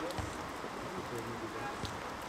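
Players' voices calling out across an outdoor football pitch during play, over a steady background hiss, with a couple of short knocks.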